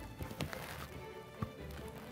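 Quiet background music, with a couple of faint clicks from biting and chewing a chocolate peanut cluster.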